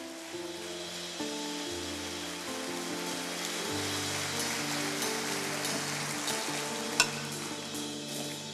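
Audience applauding over soft background music of sustained chords that change every second or two, with one sharp click near the end.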